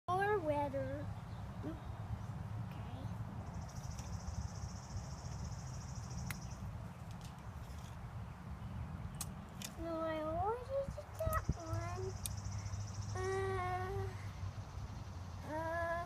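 A young child's wordless vocal sounds: a short call at the start, then rising calls and a held hum in the second half, over a steady low hum. A high buzz comes in two spells of a couple of seconds, and there are a few light taps.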